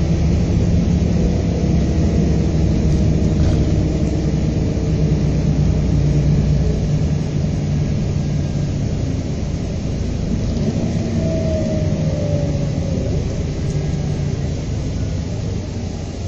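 Volvo B7R coach's six-cylinder diesel engine and road noise heard from inside the cabin while driving, a steady low drone that eases off a little after about halfway.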